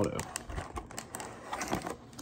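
Cardboard trading-card box being opened by hand: a run of small, irregular clicks and rustles as the flaps are worked open and a cellophane-wrapped card pack is pulled out.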